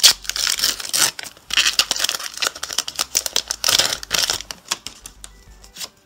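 Foil wrapper of a Pokémon trading-card booster pack being torn open and crinkled by hand, in loud crackling spurts. It dies down near the end.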